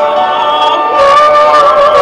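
A woman singing in operatic style with vibrato over a live symphony orchestra, moving to a louder held note about halfway through.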